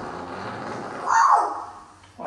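A man farting during a hug: one short, loud blast about a second in, over the rustle of clothing.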